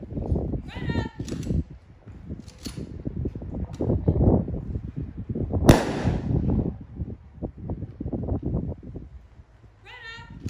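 A single volley from a three-rifle honor guard firing party, fired as one sharp crack about halfway through, as part of a military funeral volley salute.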